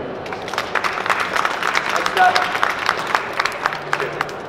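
Audience applause: many hands clapping in a dense patter that thins out near the end.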